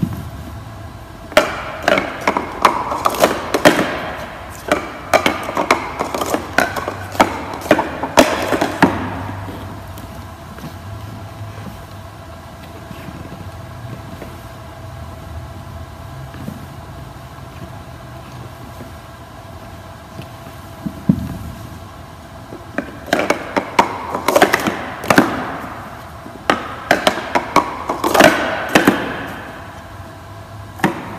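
Plastic sport-stacking cups clicking and clattering on a wooden floor as they are quickly up-stacked into a pyramid and down-stacked again: two runs of rapid clicks, each several seconds long, with a quieter stretch between them.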